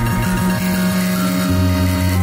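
A music track playing, with a sustained low bass note under held tones above it; a deeper bass note comes in about a second and a half in.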